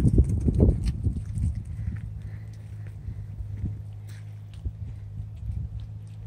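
Footsteps on a wet gravel path at the edge of slushy snow, a quick run of low thuds in the first second or two that then thin out and fade, with a low steady hum underneath.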